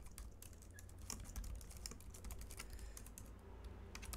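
Computer keyboard typing: a quick, irregular run of faint key clicks as text is typed.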